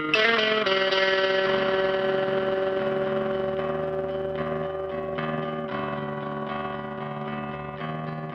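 Instrumental passage of a grunge song: a guitar in a lowered tuning strikes notes just after the start and lets them ring, slowly fading, with a few new notes partway through.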